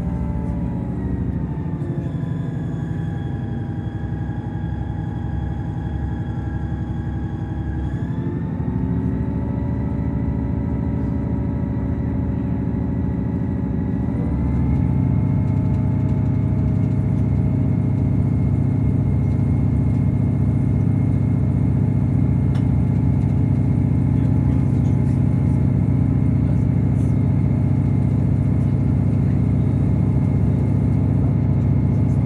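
Diesel engine of a Class 158 diesel multiple unit running under power as the train pulls away and accelerates, heard from inside the carriage. The engine note shifts and grows louder twice, about 8 and 14 seconds in, then holds steady.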